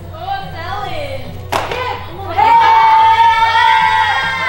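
Voices talking and laughing, one sharp clap about a second and a half in, then from about halfway a single long held sung note.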